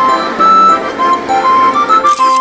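Background music: a simple, bright melody of short stepping notes over a steady accompaniment.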